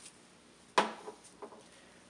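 A sharp knock a little under a second in, then a few faint clicks, from a cordless impact driver and a just-removed bolt being handled; the driver is not running.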